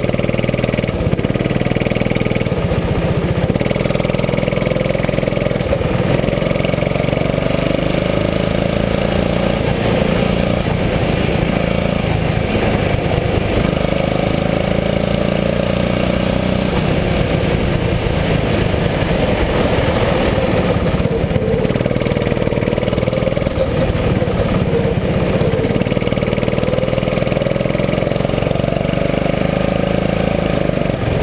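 Go-kart engine heard onboard, running under load around the track, its pitch rising and falling as the kart speeds up on the straights and slows for the corners.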